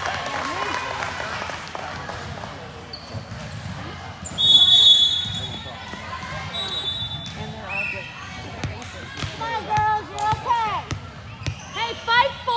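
A referee's whistle blows one short, shrill blast about four seconds in, the loudest sound here. Around it, voices of players and spectators echo in a large gym, growing busier near the end.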